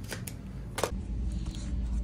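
Rustling handling noise with a few sharp clicks in the first second, the last and loudest just before one second in, then a low rumble from the hand-held phone being moved.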